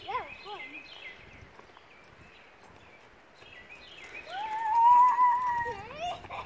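Children squealing on a swing: short high squeals that rise and fall right at the start, then one long high-pitched squeal held for nearly two seconds from about four seconds in.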